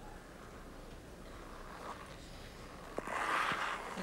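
Low, steady arena background noise. About three seconds in a sharp knock, a fainter one about half a second later, and a swell of crowd noise.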